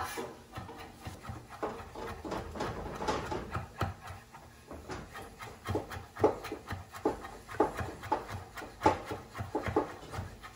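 Chef's knife chopping fresh parsley on a wooden cutting board: a run of uneven knocks as the blade comes down on the board, two or three a second, a few landing harder than the rest.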